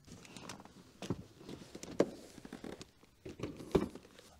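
Faint, scattered clicks and light knocks from a car's front seat being disconnected and lifted out, with the sharpest knock near the end.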